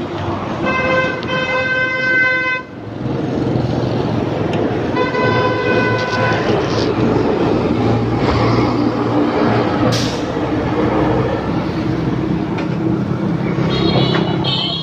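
A motorbike horn honks twice, each blast steady and nearly two seconds long, then the motorbike engine runs on under road traffic noise.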